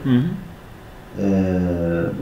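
A man's voice: a short syllable, then a little over a second in, one long vowel held at a level pitch, like a drawn-out hesitation sound.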